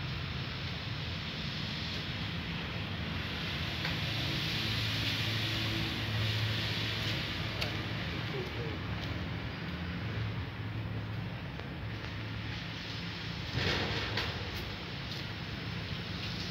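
Steady background noise with a low hum and faint voices, a few faint clicks, and one brief louder noise about thirteen and a half seconds in.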